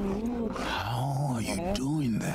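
Animated Night Fury dragon cooing from a film soundtrack: a low creature call that rises and falls about halfway through.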